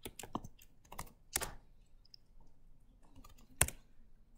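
Typing on a computer keyboard: a run of scattered keystrokes, with two louder key presses about a second and a half in and near the end.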